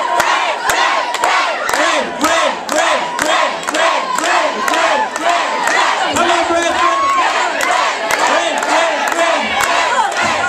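A crowd shouting and cheering, with stretches of regular shouts about twice a second and sharp claps throughout.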